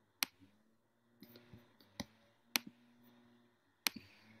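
Four sharp computer-mouse clicks spread over a few seconds, with a few softer clicks between them, over a faint steady hum.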